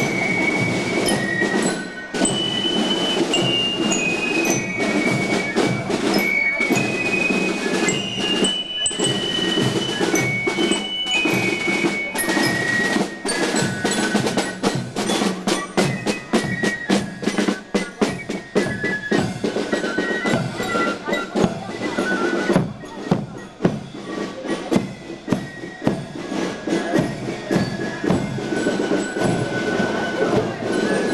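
Marching drum-and-fife band playing a march: high flutes carry the melody over a steady beat of snare drum strokes.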